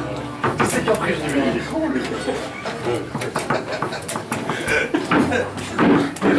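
Sharp clacks of a foosball ball being struck by the players' figures and knocking against the table, with rods clanking, over voices talking in the background.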